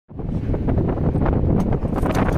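Loud, uneven rumbling noise of wind buffeting an outdoor microphone.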